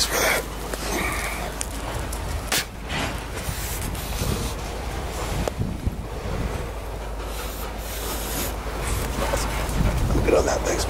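Rustling and crackling of a bag being rummaged through, then of dry grass and brush being pushed through, over a steady low rumble of wind or handling on the microphone.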